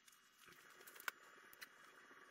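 Near silence: faint room hiss with a few light clicks, one sharper click about a second in.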